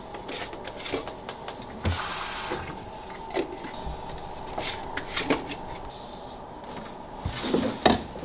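Scattered light knocks and clicks of a plastic water bottle and tap being handled at a washbasin, with a short hiss of tap water running about two seconds in.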